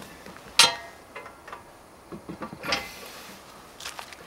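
A sharp metallic clink about half a second in, with a brief ring, then several lighter clicks and a short rustle: metal climbing anchor gear being handled and repositioned.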